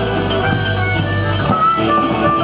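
Live rock band playing loudly: electric guitars holding notes over a drum kit, with one guitar note gliding up in pitch near the end.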